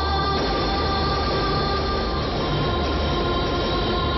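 Film background score: dramatic droning chords held over a low pulsing throb.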